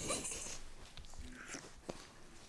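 A short laugh, then soft rubbing and rustling close to the microphone as a hand strokes a small dog's fur. A sharp click comes near the end.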